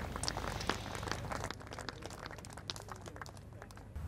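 Scattered clapping from a small golf gallery, irregular and thinning out towards the end.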